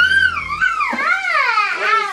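A toddler's high-pitched, wavering whine, its pitch sliding up and down without break. A low hum underneath stops about half a second in.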